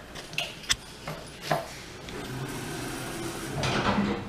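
Otis Gen2 elevator car doors sliding shut near the end, after a few sharp clicks at the start, over a low steady hum.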